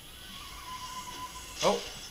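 Audio of a YouTube video ad coming faintly through the HP Compaq dc7800p's built-in speaker, with a thin held tone for under a second before the end.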